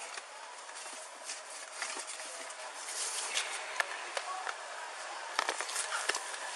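Rustling and scraping picked up by a police body-worn camera's microphone while a car's seat and floor are searched by hand, with a few sharp knocks, most of them near the end.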